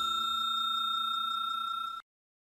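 A bell-like notification chime ringing on as one steady, pure tone that slowly fades, then cuts off suddenly at the very end.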